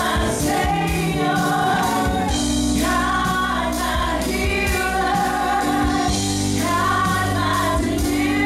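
Women singing a gospel worship song into microphones, with several voices together, over a live band of electric bass, keyboard and drums keeping a steady beat.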